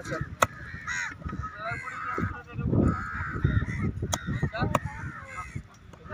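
A cleaver chopping through fish on a wooden log block: a few sharp chops, one near the start and two about four seconds in. Crows cawing through it.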